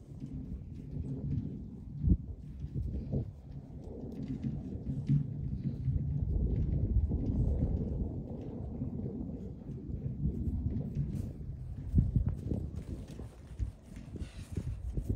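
Large dogs play-fighting: low rumbling growls and scuffling, swelling in the middle, with a couple of sharp knocks about two seconds in and near the twelve-second mark.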